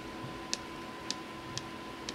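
Faint, evenly spaced high ticks, about two a second, over a quiet room hiss with a thin steady tone underneath.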